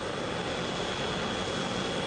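AH-64 Apache helicopter's twin turboshaft engines and rotor running steadily as it flies low: an even rush of noise with a thin, steady high whine over it.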